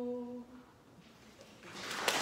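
Three unaccompanied voices holding the final chord of a Georgian polyphonic song, which cuts off about half a second in. After a short hush, applause begins near the end.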